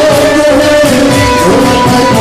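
Music: singing over held instrumental notes, with a steady drum beat.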